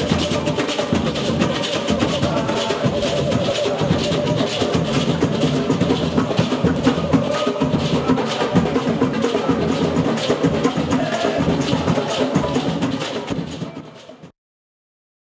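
Batucada street percussion group playing a fast samba rhythm on bass drums, tambourines and maracas, with men's voices singing along. The sound fades out near the end.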